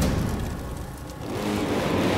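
Dramatic background score: a noisy whooshing swell that dips about a second in, then builds again with low held notes.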